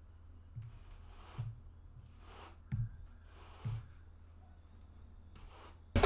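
Push-broom bristles brushing across carpet in about six short, soft swishes, pushing a guitar pick, over a steady low hum. The pick does not slide well on the carpet.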